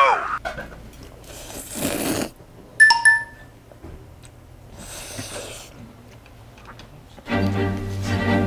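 Noodles being slurped from a bowl of noodle soup, twice, with a short bright ding about three seconds in; music comes in near the end.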